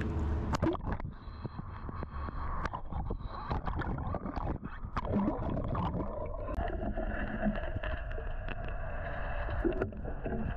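Water heard through a camera microphone held underwater: muffled gurgling and rumble with many small clicks and crackles. Faint steady tones run through it and change pitch about six and a half seconds in.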